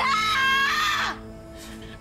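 A young woman's long, high-pitched scream of distress lasting about a second, over sustained dramatic background music that carries on after the scream breaks off.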